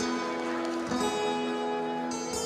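Steel-string acoustic guitar played fingerstyle: plucked notes ringing together, with a fresh group of notes picked about a second in.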